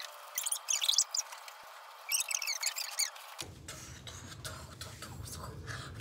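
High-pitched squeaky chirping in two bursts of about a second each, with all low sound cut out beneath it; it stops suddenly after about three seconds. Faint room noise with light clicks follows.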